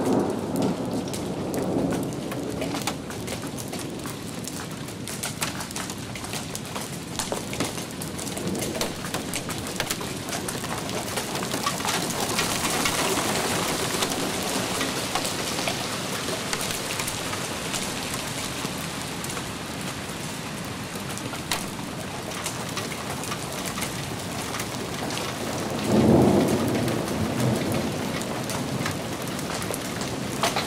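Heavy rain falling steadily on a patio and lawn, a dense patter that grows heavier midway. About four seconds before the end a loud low rumble of thunder stands out over it.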